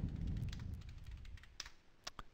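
Typing on a computer keyboard: a run of light keystrokes, growing fainter toward the end, entering commands to compile and run a program.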